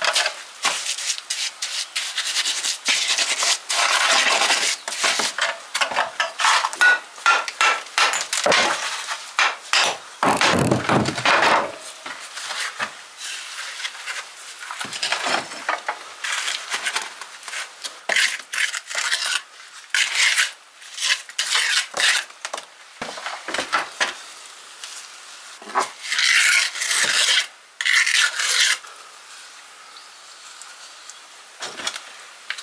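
Steel trowel scraping and packing mortar into the gaps of a rubble-stone wall, in quick repeated strokes broken by short pauses.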